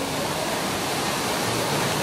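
Steady rushing background noise with no distinct events.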